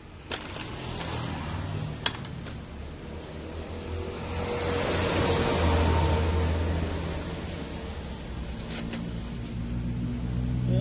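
A motor vehicle passes by, its engine and tyre noise swelling to a peak around the middle and fading away. Over the first two seconds come a few sharp metal clicks from bolts and tools being handled at the engine's cylinder head, the loudest about two seconds in.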